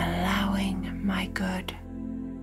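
A woman's voice speaking a short phrase, likely one of the spoken affirmations, over steady ambient new-age music; the voice stops near the end.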